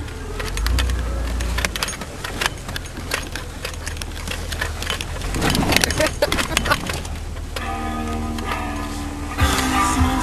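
Jeep driving slowly over a rough grassy trail, heard from inside the cab: a steady low engine and road rumble with frequent knocks and rattles from the bumps. Music comes in about three-quarters of the way through.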